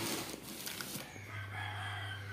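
A rooster crowing faintly in the background: one long, drawn-out call starting about a second in. Before it, a few soft knocks of cardboard being handled.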